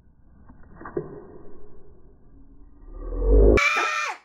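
A muffled, filtered editing effect laid over the moment the nose-wax sticks are pulled out: a dull low rush that swells to a deep peak about three seconds in, then cuts off abruptly. Laughter breaks in right after.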